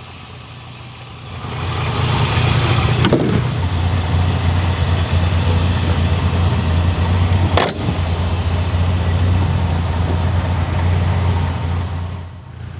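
A car engine running steadily at idle with a deep, even hum, coming in about a second and a half in. Two sharp knocks sound over it, about three and seven and a half seconds in.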